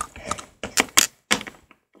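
A run of sharp clicks and knocks, about six in under two seconds, as plastic Littlest Pet Shop figures and a card prop are handled and tapped on a hard floor.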